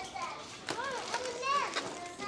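A young child's high-pitched wordless vocalizing: two rising-and-falling squeals, about a second in and again just after, the second louder.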